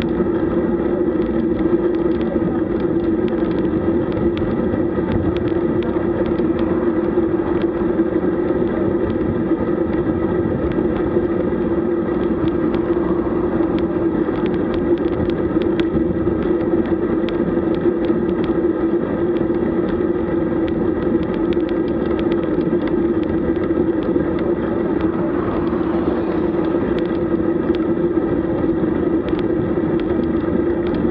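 Steady wind and road noise from a camera mounted on a road bike riding at about 23 km/h on asphalt, with a constant hum throughout.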